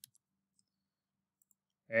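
One or two computer keyboard keystrokes right at the start, the end of a burst of typing. Then near silence until a man's voice begins just before the end.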